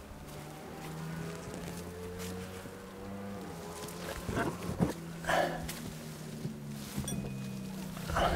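Leaves and branches rustling in a couple of short bursts, with a sharp knock among them, about halfway through, as a throw line is pulled back out of a tree. A steady low hum runs underneath in the first half.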